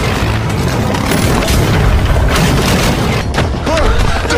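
Action-film soundtrack of a fight scene: loud music with deep booms and many sharp hits.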